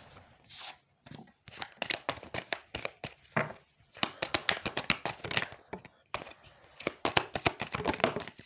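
A deck of oracle cards being shuffled by hand: irregular runs of quick card clicks and flicks, busiest in the second half, with cards dealt down onto the cloth.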